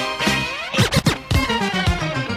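DJ mix of funk and breakbeat records with a quick turntable scratch about a second in: a record pushed back and forth under the needle, its pitch sliding up and down, before the beat carries on.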